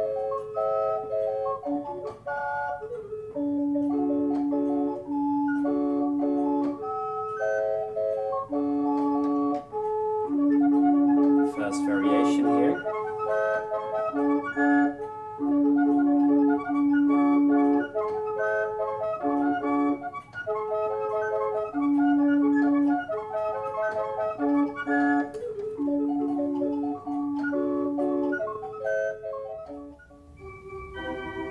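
Mechanical flute clock playing a melody on its small wooden flute pipes, the tune a run of quick, light notes over held lower tones, all sounded by a pinned cylinder opening the pipes to wind from the clock's bellows. About twelve seconds in there is a brief noise.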